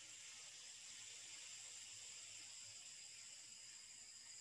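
A long, forceful exhale through one partly closed nostril in alternate-nostril breathing (Nadi Shodhana): a faint, steady nasal hiss of breath.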